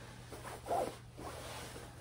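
Nylon shell of a Patagonia puffer jacket rustling and rubbing as hands search its pockets, with one fuller rustle just under a second in.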